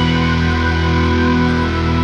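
Symphonic metal music, loud and steady. Held chords ring on as the high cymbal-like wash thins out.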